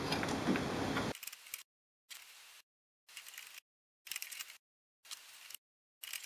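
Faint plastic clicks and rattles of colour ink cartridges being pushed into an HP OfficeJet Pro 9015's cartridge carriage and snapping into place. They come in short bursts about once a second.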